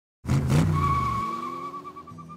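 Car sound effect on a logo sting: an engine bursts in about a quarter second in, then a tyre screech holds as a steady high tone and slowly fades.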